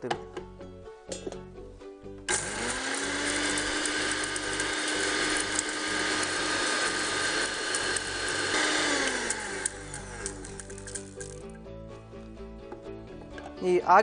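Electric mixer grinder (mixie) with a stainless-steel jar running. The motor whirs up to speed about two seconds in and grinds steadily for several seconds, then winds down a little past the middle as the grinding noise tails off.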